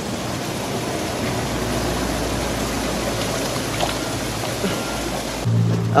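Creek water flowing over a shallow riffle close to the microphone, a steady rushing.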